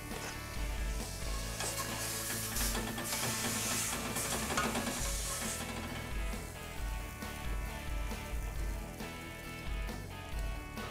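A spoon stirring and scooping thick, creamy risotto in a pot, a wet hiss that is strongest for a few seconds in the middle.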